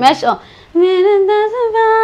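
A woman's voice holding one long sung note that rises slowly in pitch, after a short word and a brief pause.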